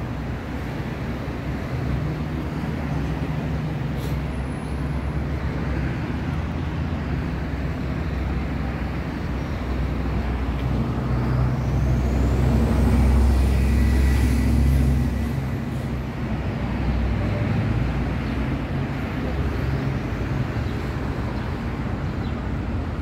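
Street traffic: a steady low engine rumble from passing vehicles that swells louder for a few seconds around the middle, with a faint high rising whine at the same time.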